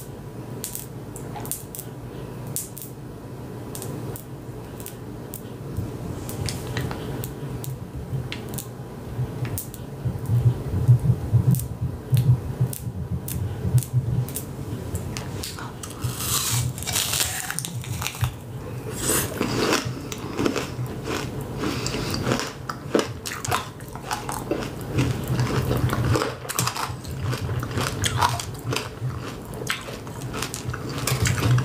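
Close-up biting and chewing of a candy apple: the hard red candy shell crackles and crunches between the teeth in irregular clicks, busiest in the second half, over a low steady hum.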